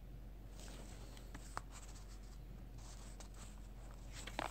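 Thin pages of a Bible being turned by hand: faint paper rustles and a few soft flicks scattered through, over a low steady room hum.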